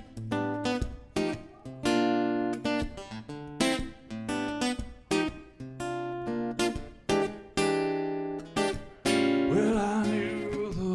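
Solo acoustic guitar playing a song's introduction: a slow series of picked and strummed chords, each struck sharply and left to ring. Near the end a man's singing voice comes in over the guitar.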